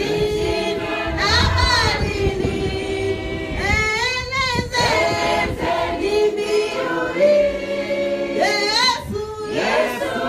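Church congregation singing a hymn together, led by a woman's voice through a microphone, in long held notes.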